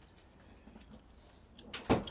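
Quiet room tone, then a brief loud burst of noise near the end, just before a voice starts.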